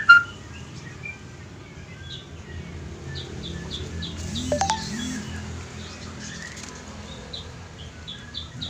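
Birds chirping outdoors: one loud rising chirp right at the start, then faint, short high chirps repeating over a steady background noise.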